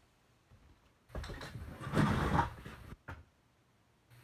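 Footsteps and the rattle of a loaded leather tool belt as a man walks across the room, starting about a second in and lasting about two seconds, followed by a single short click.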